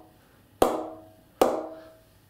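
A cricket ball bounced off the middle of the blade of a new Grade 1 English willow BAS Bow 20/20 cricket bat: two sharp, ringing pings about a second apart, each dying away quickly. The clean ping is the sign of a responsive blade; the pings are all over the blade and the rebound is excellent.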